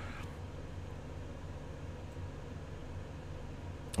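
Steady background hiss with a faint low hum: the microphone's room tone, with no other sound rising above it.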